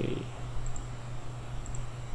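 Steady low hum with a faint high-pitched whine above it: the background noise floor of the recording.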